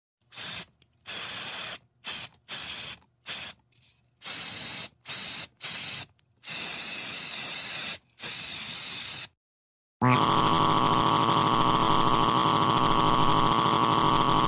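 Aerosol spray paint can hissing in a series of about eleven short and longer bursts, as a door is spray-painted. From about ten seconds in, a louder continuous sound with many held tones takes over.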